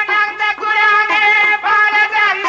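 Punjabi dhadi music: a melody of held, wavering notes that step from pitch to pitch, dipping briefly about half a second in and again near the end.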